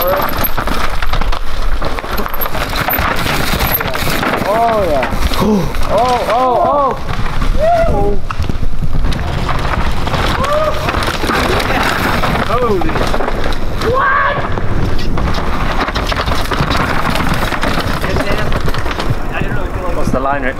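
Mountain bikes clattering down a loose, dusty rock section under a steady rush of tyre and trail noise. Trackside spectators whoop and yell in quick short cries, in a run from about four to eight seconds in and again from about ten to fifteen seconds in.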